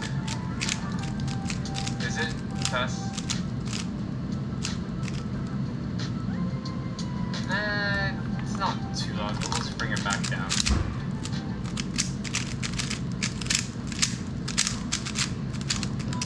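Rapid, irregular clicking of a 3x3 speedcube's plastic layers being turned by hand, over background music.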